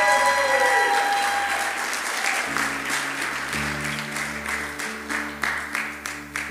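Congregation applauding steadily. Low, held musical chords come in about halfway through and grow louder as the clapping fades.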